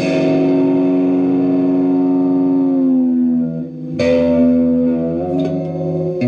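Electric guitar chord ringing out and slowly fading, its pitch sagging slightly as it dies away, then a second chord struck about four seconds in and held.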